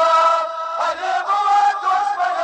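Men chanting a Muharram lament in long drawn-out notes on an 'Ali' refrain. Dull thumps of chest-beating (matam) keep time about once a second.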